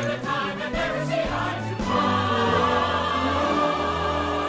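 A chorus singing a Broadway show tune, the words 'of all' sung at the start. About two seconds in it settles on a long held chord with vibrato.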